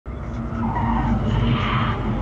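Heavy vehicle noise: a steady low engine drone with loud road and tyre noise that builds from about half a second in.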